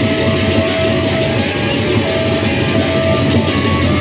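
Sasak gendang beleq ensemble playing: large two-headed barrel drums beaten by hand with a fast, dense rattle of clashing hand cymbals over them. A held melody note sounds above the rhythm.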